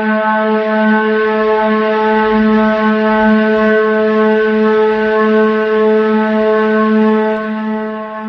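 A single sustained drone note held at one unchanging pitch, rich in overtones, serving as the intro music.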